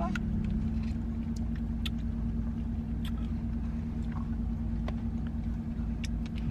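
Steady low hum of a car running, heard from inside the cabin, with a constant droning tone. A few faint light clicks sound over it.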